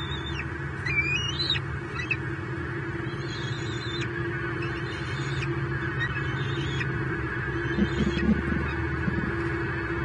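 Young bald eagles giving short, high calls that slur up and down, several in the first two seconds and a few more later, over a steady low electrical hum from the nest-cam microphone. A couple of soft knocks about eight seconds in, as the eaglets flap their wings in the nest.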